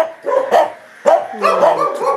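Dog barking repeatedly, about four sharp barks in two seconds, with a drawn-out falling whine near the end.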